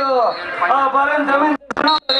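A man speaking, words not made out.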